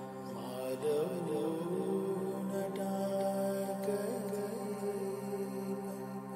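Indian semi-classical music: a voice enters about a second in with a slow, gliding wordless melody over a steady drone.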